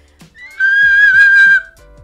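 A woman singing the highest note she can: her voice slides up about half a second in, holds one very high, loud note for about a second, then breaks off.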